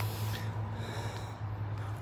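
A person breathing close to the microphone, a steady airy breath noise with no voice, over a steady low hum.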